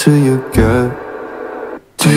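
A pop song with a singing voice played back through a portable Bluetooth speaker. The voice sings through the first second, the music eases into a quieter stretch, then almost cuts out briefly just before the end as it comes back in.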